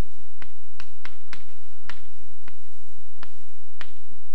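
Chalk tapping and clicking against a blackboard while writing: about eight sharp, irregular taps.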